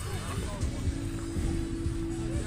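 Outdoor funfair background: music and distant voices over a continuous low rumble, with a steady held tone coming in about halfway through.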